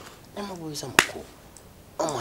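A man's voice speaks a few words, then one sharp click sounds about a second in.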